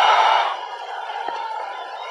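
Stadium crowd noise at a cricket match, loud at first and settling to a lower, steady din about half a second in.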